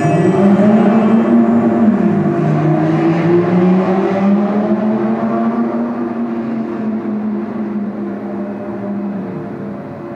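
Car engine accelerating, its pitch rising and then dropping about two seconds in as it settles into a steady run, fading gradually toward the end.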